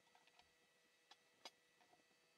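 Near silence with a few faint, short clicks, the loudest about a second and a half in: small knocks from handling a laptop's metal heatsink assembly and cleaning brush on a work table.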